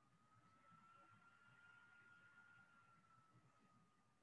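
Near silence, with a faint high steady tone that drifts slightly up in pitch and back down.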